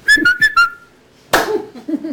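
A man whistling four short notes through his lips, alternating high and low, the last held a little longer, followed by a brief vocal sound.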